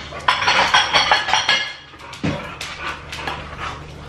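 Ceramic dishes clattering in a cupboard as a bowl is pulled out, a rattling run of knocks and ringing for over a second, then one sharper knock about two seconds in.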